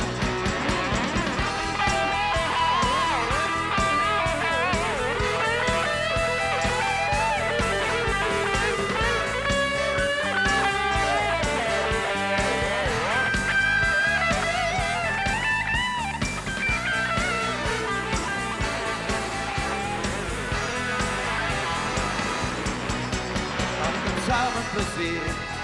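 Live band playing an instrumental break in an upbeat rock-and-roll song, a guitar lead with bending notes over the drums and rhythm section.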